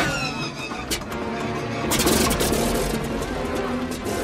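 Orchestral film score playing over the action, with a loud noisy surge about two seconds in.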